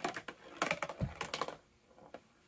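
A small marble rolling and clattering down cardboard-tube ramps, a rapid run of clicks and rattles with a dull thump about a second in, stopping after about a second and a half.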